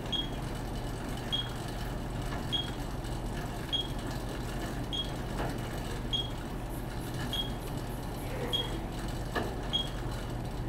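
Electronic metronome beeping evenly, roughly once every second and a quarter, pacing the rider's pedal cadence on the cycle ergometer, over a steady low hum.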